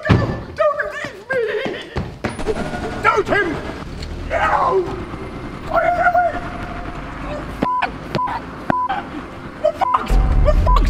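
Wordless voice sounds, cries and groans, with a thud about two seconds in, followed by a few short, same-pitched beeps near the end.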